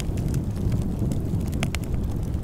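Fire-and-sparks sound effect: a steady low rumble with scattered crackles.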